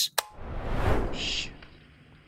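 A sharp click, then a whoosh of noise that swells and fades over about a second, with a brief high hiss near its end: an editing transition sound effect.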